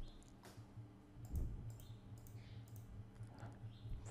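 A few faint, scattered clicks of a computer mouse and keyboard over a low steady hum.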